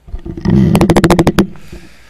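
Handling noise on a desk microphone: a thud with a rapid run of about ten sharp clicks, lasting just under a second, then fading away.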